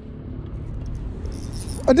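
Wind rumbling on the camera microphone, with a brief high metallic whirr near the end from the spinning reel as a just-hooked fish is played.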